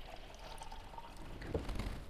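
Water poured in a steady, faint stream from a clear plastic jug into the partly filled plastic tank of a water ionizer, with a small tap about one and a half seconds in.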